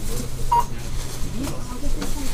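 A single short electronic beep about half a second in, over a steady low hum.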